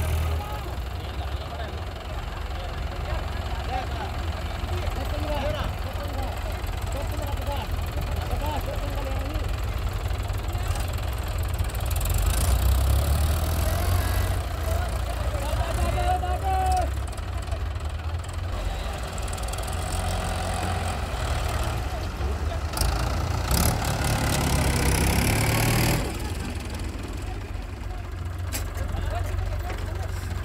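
Diesel tractor engines running with a steady low rumble, working harder and louder through the middle stretch and dropping back suddenly about four seconds before the end. Men's voices call out over the engines.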